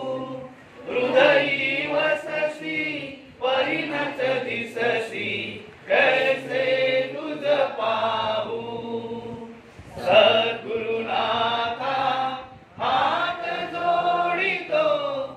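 A congregation chanting a devotional hymn together, led by a man's voice over a microphone, in sung phrases of two to three seconds with short breaks for breath between them.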